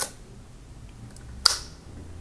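Film advance lever of a Zeiss Ikon Contina II camera being worked: a click at the start, a few faint ticks, then one sharp click about a second and a half in.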